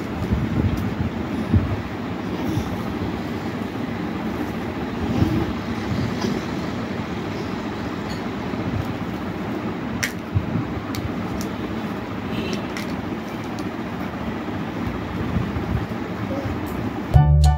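A steady low rumble of background noise, with a few light knocks and taps from a toddler handling plastic toys, the clearest about ten seconds in.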